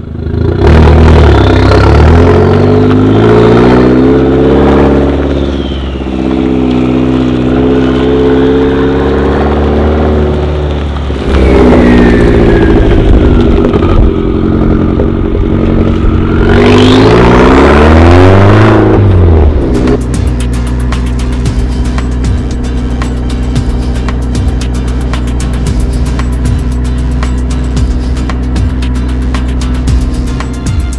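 Tuned Opel Adam S's turbocharged 1.4-litre four-cylinder revving and accelerating, its note rising and falling several times over the first twenty seconds. Then music with a steady beat takes over.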